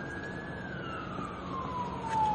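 Emergency-vehicle siren wailing: one long tone that rises to its highest pitch about half a second in, then slowly falls.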